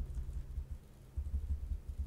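Low, uneven rumble with a steady low hum underneath, easing off briefly in the middle: background room and microphone noise, with no typing or clicks.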